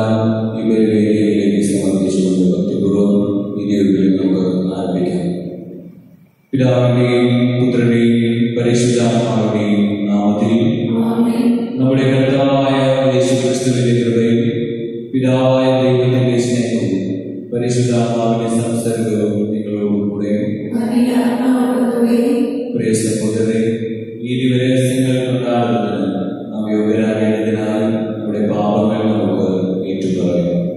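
A Catholic priest chanting a liturgical prayer into a microphone, one low male voice in long sung phrases with short breaks between them and a brief pause about six seconds in.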